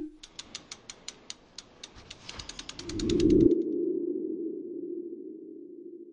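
Logo-animation sound effect: a run of crisp ticks that speeds up over the first three seconds, then a low swelling tone that peaks about three seconds in and slowly fades away.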